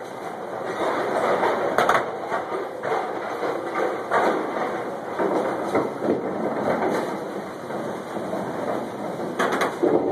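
Candlepin bowling alley noise: a continuous rumble that swells and fades, with sharp clacks about two seconds in and again near the end.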